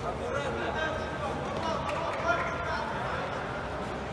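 Indistinct voices of several people talking across a large sports hall, with a short knock a little over two seconds in.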